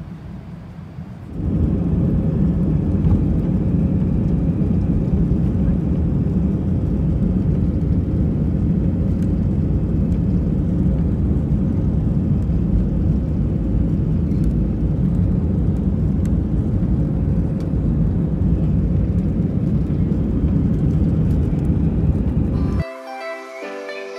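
Inside the cabin of an Airbus A320 on its takeoff roll: the CFM56 jet engines at takeoff thrust and the deep rumble of the wheels on the runway, loud and steady. They start suddenly about a second in, after a quieter cabin hum.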